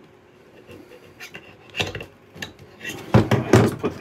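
Hard plastic parts of a clip-on fan being handled: a few light clicks, then several louder knocks about three seconds in as the fan body is set down on a table.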